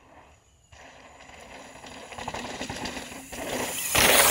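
Mountain bike riding down a sandy trail toward the microphone: tyres hissing and crunching through the sand with small rattles. It starts about a second in, grows steadily louder, and is loudest as the bike passes close at the end.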